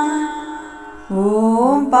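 A voice chanting Sanskrit names of Veerabhadra to a sung melody. A held note fades away over the first second, then a new line begins on 'Om' about a second in, rising in pitch.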